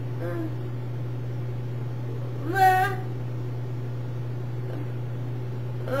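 A domestic cat meowing once, a short rising call about two and a half seconds in, over a steady low electrical hum.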